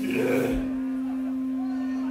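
A steady, single-pitched electronic tone from the stage amplification, a hum held unchanged throughout, with a brief burst of voice in the first half second.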